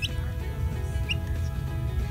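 A Dominique chick peeping twice, each peep short, high and rising, over background music with steady held tones.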